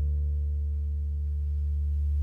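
The last sound of a song left ringing from the electric guitar and its amplifier: a steady low drone with a few fainter, higher tones held over it that fade away near the end.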